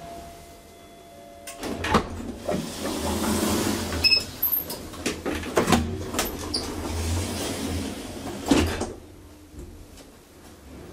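Automatic stainless steel centre-opening inner car doors of an Asea-Graham traction elevator sliding open with clunks about a second and a half in, the door operator running with a few clicks and knocks, then closing again with a thump near nine seconds.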